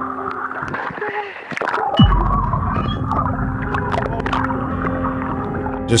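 Droning background music of sustained, steady tones. About two seconds in, a deep bass note drops in with a quick downward sweep and holds underneath, with scattered clicks and knocks over it.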